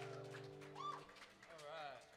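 The last chord of an acoustic string band's banjo, mandolin and guitar rings out and fades in the first second, followed by a couple of short high calls that rise and fall.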